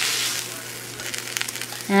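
Hot sautéed vegetables sizzling as they are scraped from a pan into a pot of raw egg whites. The hiss eases after about half a second, and a few light clicks of the utensil follow near the end.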